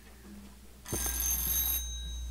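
A conference microphone being switched on: a low electrical hum comes up, then about a second in a click and just under a second of hiss with thin high-pitched tones, which cut off sharply while the hum stays on.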